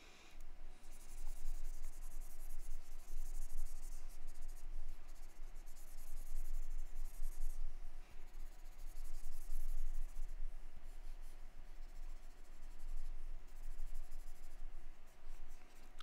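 A pen stylus scratching across a graphics tablet in a run of sculpting strokes, each lasting from about a second to a few seconds, with short breaks between them.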